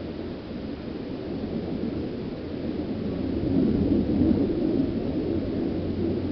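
Wind buffeting the microphone outdoors: a low rumble that swells into a stronger gust about three and a half seconds in, then eases.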